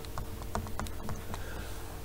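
Light, irregular clicks and taps of a stylus on a writing tablet as a word is handwritten, over a faint steady hum.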